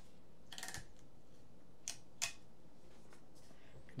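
Adhesive tape peeled off a 3D printer frame in a short, faint crackle under a second in, followed by two light clicks of handling.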